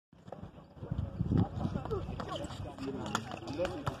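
Several voices chattering and calling, over quick thuds and knocks of running footsteps and a bouncing basketball on a concrete court. The heaviest thuds come a little over a second in.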